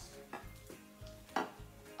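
Spatulas stirring a thick, wet instant-snow slime mixture in a ceramic dish and a glass baking dish, with a couple of short knocks of a spatula against a dish, the louder one about a second and a half in.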